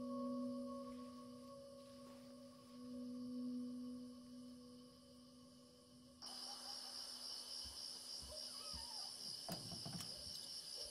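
A sustained, steady drone of eerie film score, then about six seconds in an abrupt switch to night ambience of crickets chirping steadily, with a few soft low thumps near the end.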